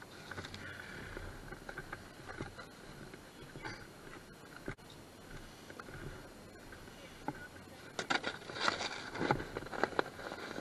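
Snow crunching and a plastic snow sled scraping and knocking as it is handled, lifted and sat on, with a louder cluster of crunches and scrapes near the end.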